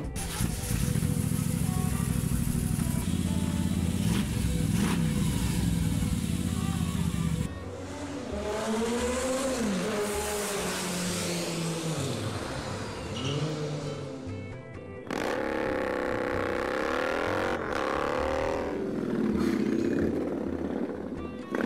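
Motorcycle engines from a series of custom cafe racers: a steady engine drone, then after an abrupt cut a third of the way in, engines revving up and down, with another abrupt change about three-quarters through. Music plays underneath.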